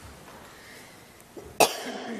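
A single sharp, loud cough about one and a half seconds in, after a stretch of quiet room tone.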